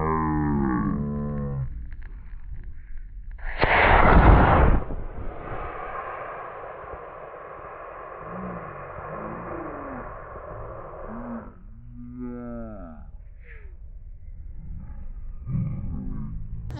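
Model rocket motor firing at liftoff: a loud rushing hiss about three and a half seconds in that lasts about a second. It is followed by several seconds of softer steady noise, with voices before and after.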